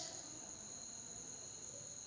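A faint, steady high-pitched whine on two fixed pitches over quiet room tone, with one short click right at the start.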